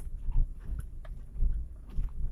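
Perodua Kembara heard from inside the cabin while crawling over a rutted dirt track: a low rumble with irregular thumps and short rattling knocks as the wheels and suspension take the bumps.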